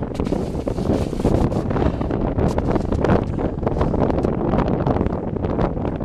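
Wind buffeting the microphone of a handheld Flip camcorder, a continuous rumbling noise that rises and falls in strength.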